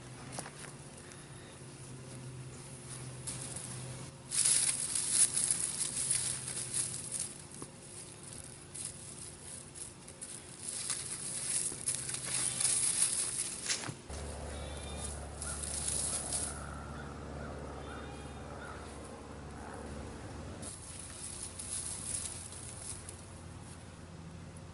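Bare hands digging through dry, loose garden soil and pulling up dead potato vines to unearth potatoes, rustling and scraping in several bouts. A low, steady hum comes in midway for about six seconds.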